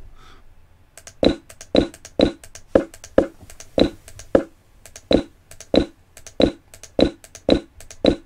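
A steady run of sharp clicks, about two a second, starting about a second in, as the game on the computer chess board is stepped forward one move at a time.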